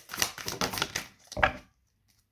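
A deck of oracle cards shuffled by hand: a quick run of papery flicks and clicks, with a louder knock about a second and a half in.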